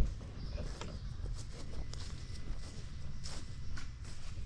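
Footsteps of someone walking across a mulched bed and onto grass, a few soft crunches and clicks over a low rumble, with a single dull thump at the very start.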